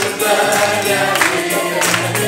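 Choir singing a church hymn with instrumental accompaniment, over a steady percussion beat.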